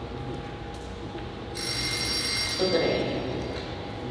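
A telephone ring, a bright tone with many steady high overtones, lasting just under two seconds from about a second and a half in. A brief muffled sound comes under the ring near its end.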